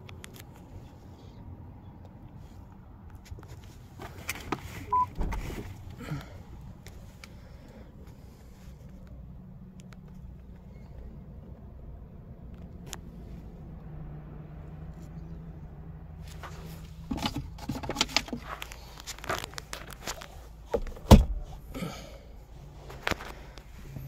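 The idling car's low, steady hum heard inside the cabin, with scattered clicks and knocks from hands handling the interior trim and controls. The knocks come thicker in the last third, with one sharp knock near the end.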